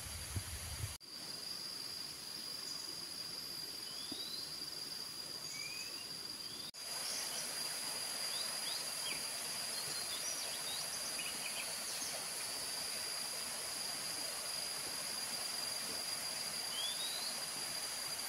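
Tropical forest ambience: a steady high insect drone with a few short rising bird calls. After a brief break about seven seconds in, a louder even rush of falling water from a small rocky waterfall joins in.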